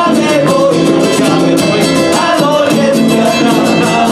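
Local folk band playing lively dance music live, with guitars and a drum keeping a steady beat.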